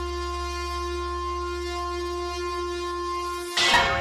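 A train horn blowing one long steady note over a low rumble, cut off abruptly about three and a half seconds in.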